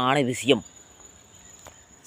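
A man's voice finishes a phrase in the first half second. Then a steady, thin, high-pitched insect trill carries on unbroken over faint background noise, with a faint click near the end.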